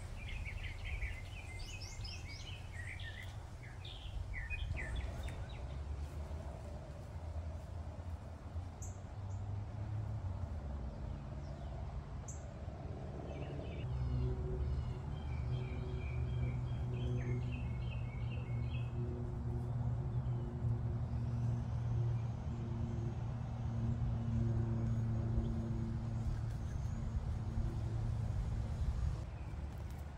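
Outdoor ambience: songbirds chirping in short phrases at the start and again about halfway through, over a low rumble that becomes a steady engine drone about halfway in and grows louder.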